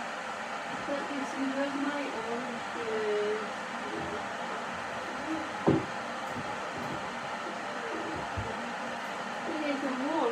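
A kettle heating water, giving a steady rushing hiss. A single sharp knock sounds a little before six seconds in.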